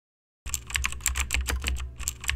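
Computer keyboard typing sound effect: a quick run of key clicks, about five or six a second, starting about half a second in.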